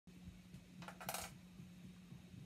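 Faint steady low hum, with a brief cluster of light clicky clatter about a second in, from handling before playing.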